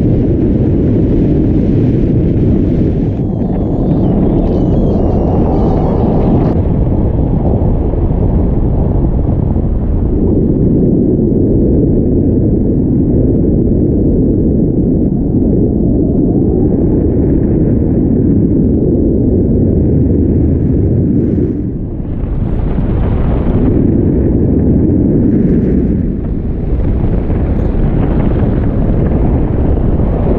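Wind buffeting a camera microphone on a tandem paraglider in flight: a loud, low, steady rush of air with a few brief lulls.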